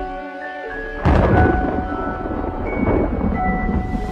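Cinematic trailer score with sustained held notes, hit by a sudden loud crash about a second in that dies away over a second or so, then a weaker swell near three seconds, as the title card arrives.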